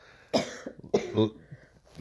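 A person coughing, about three short coughs in the first second and a half.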